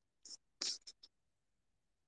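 Faint scratchy rustling: a few brief scrapes in the first second, then quiet. This is handling noise close to the microphone.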